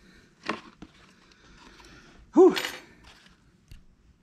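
Light rustling and a few small clicks from a plastic shift-console piece and its old cloth shift boot being handled and turned over. A short vocal sound from a person about two and a half seconds in is the loudest thing.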